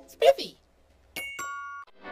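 Cartoon logo sound effects. A short voice-like sound slides down in pitch, then about a second in comes a clean two-note chime, a high ding followed by a lower dong, like a doorbell, which cuts off abruptly.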